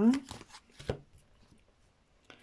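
Tarot cards being handled on a table: a few light clicks and one sharper tap about a second in, as a card is drawn from the deck.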